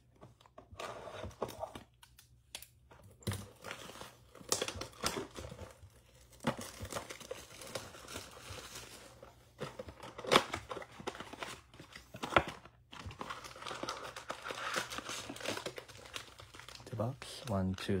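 Plastic wrap being crinkled and torn off a 2022 Score football card blaster box, and the cardboard box opened to get the packs out: irregular crinkling and rustling with a few sharp tearing sounds, the loudest about ten and twelve seconds in.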